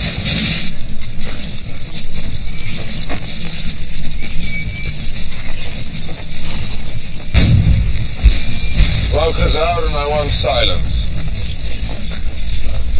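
Dense battlefield ambience of massed troops at night, a steady rushing noise with scattered clicks and rattles. About seven seconds in, a deep rumble sets in. Near the end a man's voice calls out.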